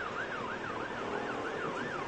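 Emergency vehicle siren in a fast yelp, its pitch sweeping up and down about four times a second.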